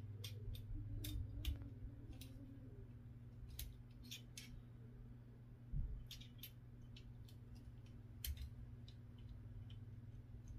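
Faint, scattered small metal clicks and taps of AR-15 trigger-group parts, the trigger and disconnector, being handled and worked into the lower receiver, over a steady low hum. There is a soft thump about six seconds in.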